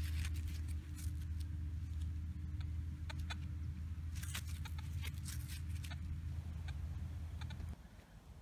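Gloved fingers handling a small dirt-caked brass lamp part: scattered faint clicks and crackles over a steady low rumble. The rumble cuts off suddenly shortly before the end.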